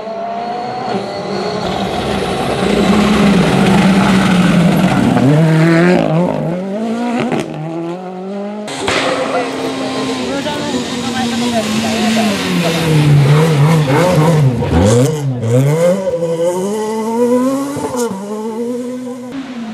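Rally cars at full throttle on a gravel stage. A Ford Fiesta R5's turbocharged four-cylinder revs up and drops through gear changes as it passes, with gravel spraying. After an abrupt change near the middle, a Renault Clio rally car's engine rises and falls several times as it brakes, shifts and accelerates through a corner.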